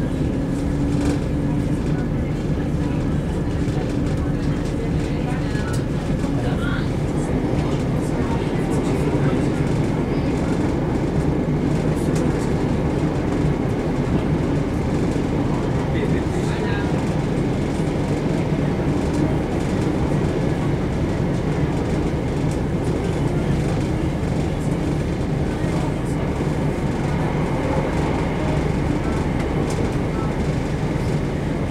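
Steady low drone of a Southern Class 171 Turbostar diesel multiple unit under way, heard from inside the passenger saloon: underfloor diesel engine and running noise, with faint scattered clicks from the wheels and rails.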